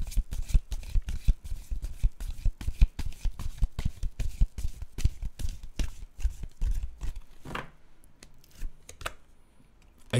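A deck of tarot cards being shuffled by hand: a fast, dense run of card clicks and rustles that thins out about seven seconds in and stops shortly before the next card is drawn.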